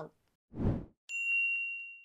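Logo sound effect: a short whoosh about half a second in, then a bright, bell-like ding about a second in that rings on and fades.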